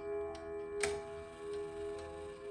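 The gong rods of an ODO 36/10 French chiming clock ringing on and slowly fading between notes of its chime melody, several tones sounding together, with one sharp click a little before halfway and faint ticking.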